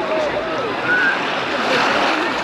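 Busy beach ambience: many people chattering at once, overlapping and indistinct, over a steady rush of wind and surf.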